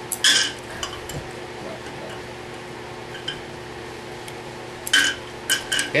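Copper tongs clinking against the ceramic crock of a jeweller's acid pickle pot as a piece of silver is moved about in the pickle. There is one sharp clink just after the start, a faint one shortly after, and a few quick clinks near the end.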